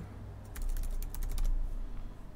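Computer keyboard typing: a quick run of about ten keystrokes lasting about a second, as a short terminal command is entered.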